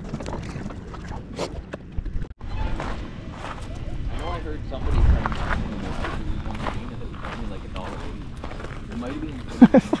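Footsteps crunching on gravel, under background voices and music, with a short laugh at the very end.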